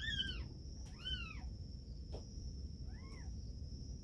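A cat meowing faintly three times, each a short meow that rises and falls in pitch, the last one lower and softer, over a steady faint high-pitched whine.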